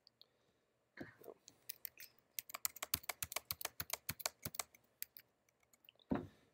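Typing on a computer keyboard: a fast run of short keystrokes, numbers entered one after another with Enter presses. The keystrokes start a little under two seconds in and stop near the five-second mark.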